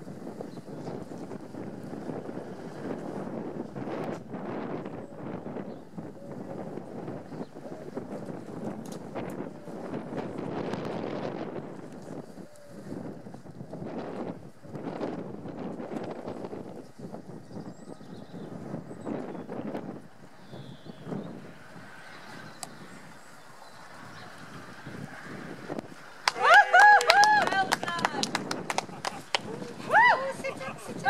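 A horse's hooves cantering over an all-weather arena surface, with wind buffeting the microphone. About 26 seconds in, a person calls out loudly in a high voice.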